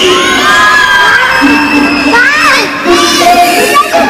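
An audience crowd of children shouting and screaming together, breaking out suddenly and keeping on, calling out to warn a performer that a scary character is creeping up behind him.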